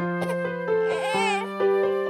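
A cartoon toddler's short whimper with a wavering pitch, about half a second in, crying over a scraped knee, over gentle children's music with held notes.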